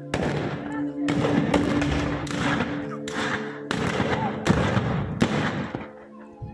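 Black-powder rifles firing blanks in a ragged series of about eight shots, roughly one a second, each with a short echo. Steady held musical tones run underneath.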